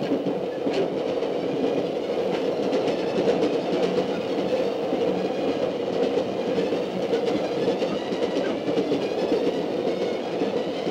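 Railway carriages running at speed: a steady rumble of the wheels on the track with faint clicks over the rail joints, as heard from inside the coach.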